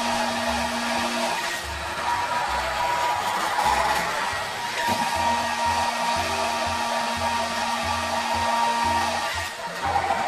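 Handheld hair dryer running steadily, blowing air through long hair as it is worked with a round brush, with background music underneath.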